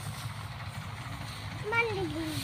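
A low, steady engine rumble in the background, with a high-pitched voice rising briefly near the end.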